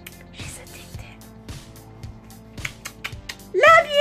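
Television programme audio from another room, background music with faint dialogue. Near the end a woman's voice close to the microphone starts a loud, wavering 'mm'.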